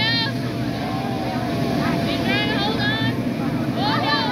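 Mechanical bull's motor running with a steady low rumble as the bull bucks and turns, with short high-pitched voice calls breaking in at the start, a couple of seconds in, and at the end.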